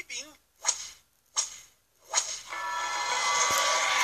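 Three sharp whip cracks about three-quarters of a second apart, the comic answer to whether child labour is used. From about halfway a loud, steady sustained sound with several held tones takes over.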